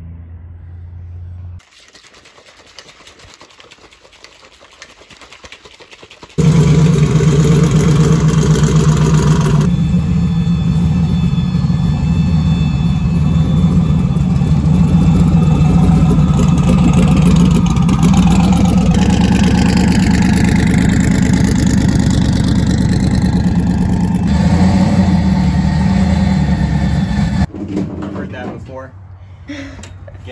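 Drag car's engine running loud and steady, cutting in abruptly after a few quieter seconds, shifting in tone a few times, and stopping suddenly near the end.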